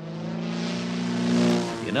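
Propeller engine of a biplane crop duster droning steadily as the plane flies past. It grows louder to a peak about one and a half seconds in, then eases off.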